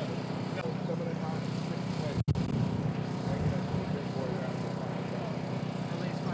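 Indistinct chatter of a gathered crowd over a steady low rumble, with the sound cutting out for an instant about two seconds in.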